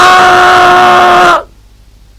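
A man's voice imitating a trumpet blast through a cupped hand: one loud held note at a steady pitch that cuts off about a second and a half in.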